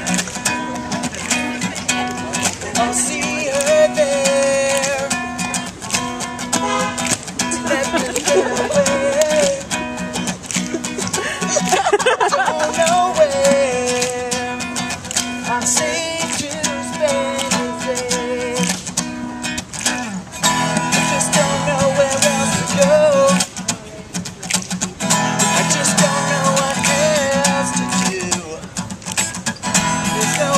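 Acoustic guitar strummed live with male voices singing a song over it.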